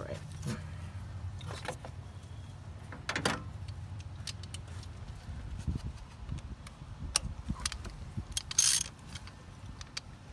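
Light metallic clicks and clinks of a spark plug socket and extension being turned by hand and handled as a spark plug is threaded into the engine, with a brief louder rattle near the end. A steady low hum runs underneath.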